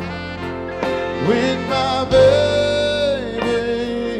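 Live soul band playing, with a male singer and saxophone over the band. About halfway through, a long note is held and then slides down as it ends.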